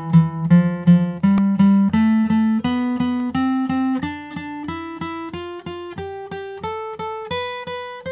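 Gibson J-45 acoustic guitar playing a scale ascending one step at a time, each note picked twice with a down and an up stroke in an even rhythm. It ends on a higher note left to ring near the end.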